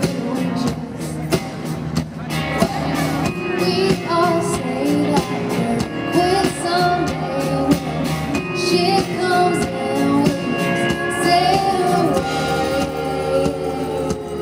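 Live country band playing at arena volume, with a woman singing the lead vocal over electric bass, guitar and a steady drum beat.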